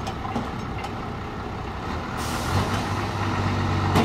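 Forklift engine running as the forklift drives across the yard, getting louder about halfway through as it picks up revs, with a hiss coming in at the same moment.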